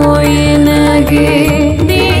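Kannada devotional song (Dasarapada) in Carnatic style: a voice holds one long steady note over sarangi and keyboard accompaniment, with a wavering ornamented line coming in about a second in.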